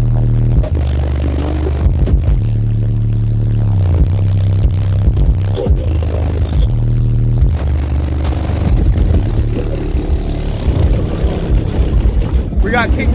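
A car-audio subwoofer system in an SUV playing bass-heavy music at high volume during a demo: long held deep bass notes, one sliding down in pitch about four seconds in.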